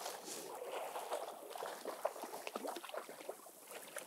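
River water splashing and sloshing around a landing net with small irregular splashes, as a hooked brook trout thrashes at the surface while being netted.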